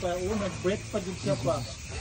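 A man's voice with a wavering, drawn-out pitch, breaking into short rising glides, fading out near the end. A steady hiss lies underneath.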